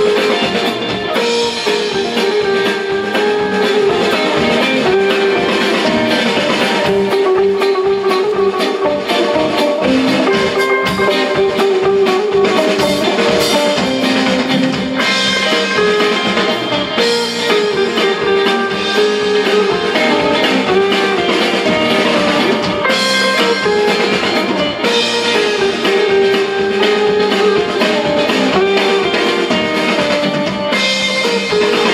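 Live band playing rautalanka, Finnish instrumental guitar music: an electric guitar lead melody over bass guitar and a drum kit, keeping a steady dance beat.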